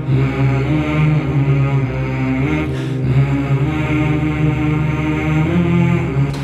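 Intro music: a droning chant with long held notes that shift slowly in pitch over a steady low drone.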